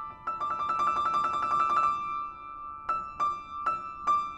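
Kafmann K121 upright piano being played: a fast trill in the upper register for about a second and a half, then a few single high notes struck and left ringing.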